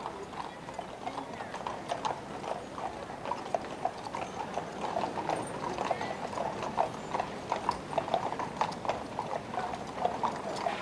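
Hooves of the horses drawing a gun carriage in a slow funeral procession, an irregular clip-clop of several hoofbeats a second on a hard road.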